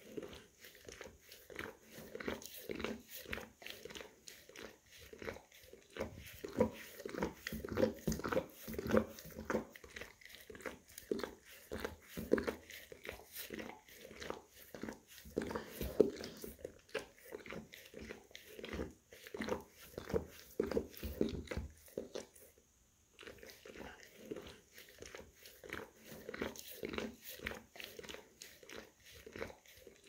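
English cream golden retriever licking and grooming its paw: a rapid, steady run of wet licks and small nibbles, several a second, with one brief pause about three quarters of the way through.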